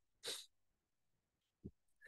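Near silence, broken by one short breath about a quarter second in, and a faint, very brief low tick near the end.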